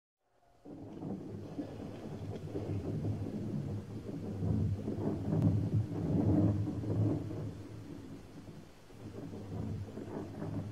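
A deep rolling rumble starts about half a second in, swells to its loudest in the middle and eases off near the end.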